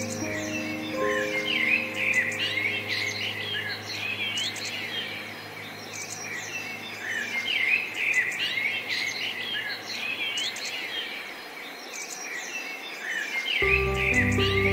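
Several songbirds chirping and trilling at once, a busy mix of many quick overlapping calls. Soft piano notes fade out in the first second and the piano comes back in just before the end.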